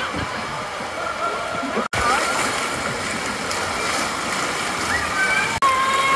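Lazy-river water rushing and splashing, with faint voices and shouts over it; the sound breaks off abruptly twice, about two seconds in and near the end.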